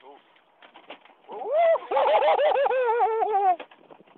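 A person laughing: a run of quick, high-pitched 'ha' syllables lasting about two seconds, starting a little over a second in.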